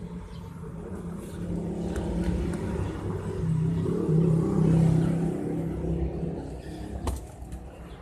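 Hyundai Starex diesel engine running with a steady low rumble, growing louder about halfway through and then settling back.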